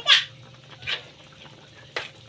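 Seafood pieces splashing into simmering sauce in a wok: a loud wet splash at the start and a fainter one about a second in. A short sharp click near the end.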